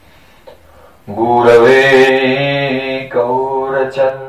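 A man's voice chanting a mantra in long, steadily held tones, starting about a second in: one long phrase, a brief break, then a second phrase.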